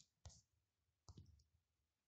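Near silence broken by a few faint clicks in the first second and a half.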